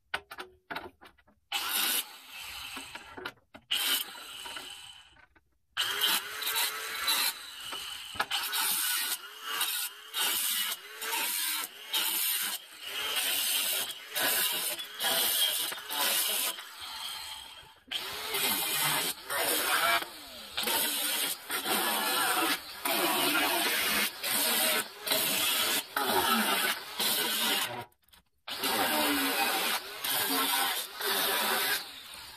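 Handheld angle grinder with a cut-off wheel cutting through the steel bars of an IBC tote cage in repeated bursts of one to a few seconds, its pitch wavering as the wheel bites into the metal. It stops in short pauses between cuts.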